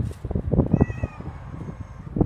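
A kitten meowing once, a thin high-pitched call about half a second long near the middle, over a run of close knocks and scuffs.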